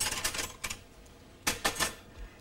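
Keys and cutlery clinking and rattling against each other in a tray as a hand rummages through them. The clicks come in two quick clusters, one at the start and another about a second and a half in.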